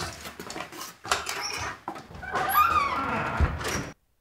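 A wooden front door being handled and shut: a few knocks and clicks, then a creaking, gliding squeal in the second half that cuts off suddenly near the end.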